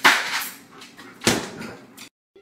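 Refrigerator door being pushed by a dog: a noisy bump right at the start and a second one about a second later.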